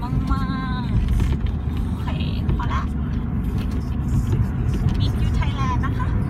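Steady low rumble of road and engine noise heard inside a moving car on an expressway, with a woman's voice speaking briefly over it.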